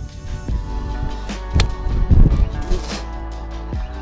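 Background music throughout, with the sharp click of a golf iron striking the ball and turf about one and a half seconds in.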